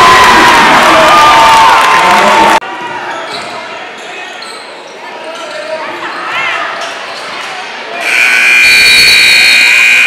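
Loud gym crowd noise that cuts off suddenly a few seconds in, then basketball court sounds with brief sneaker squeaks on the hardwood. Near the end a scoreboard buzzer sounds steadily for about two seconds.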